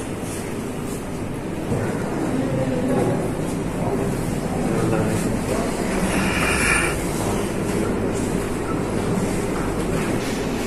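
Steady room noise with a low rumble and indistinct voices of people talking in the background.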